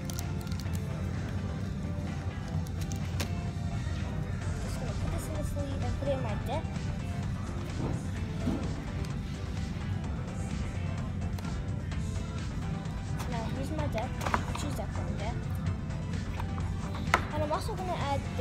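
Background music and faint talk over a steady low hum, with two sharp clicks in the second half.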